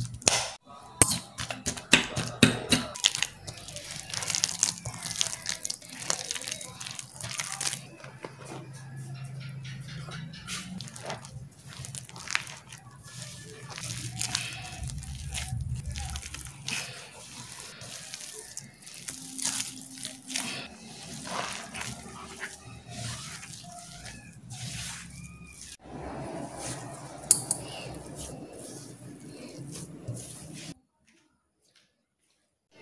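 Wire potato masher striking a steel wok in rapid taps for the first few seconds as boiled potatoes are mashed, then hands squeezing and kneading soft potato dough in the wok.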